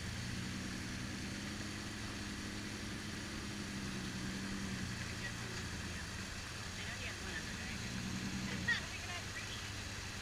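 Jeep engine running steadily at low revs as the Jeep crawls over rocks in a creek bed, a low even hum.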